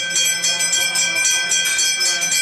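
A temple bell rung rapidly and without pause during a ritual abhishekam of a Ganesha idol. Its quick strokes run together into a steady ringing with several held tones.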